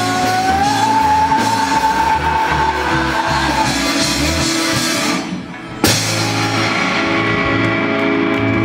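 A live indie rock band playing loud on electric guitars, bass and drums, with one long held note over the first half. The sound thins out briefly about five seconds in, then the band comes back in on a sharp hit.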